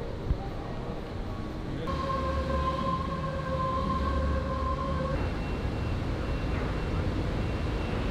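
Outdoor city traffic noise, a steady low hum of vehicles. A steady high whine from a vehicle joins in about two seconds in and stops about five seconds in. The background changes abruptly twice.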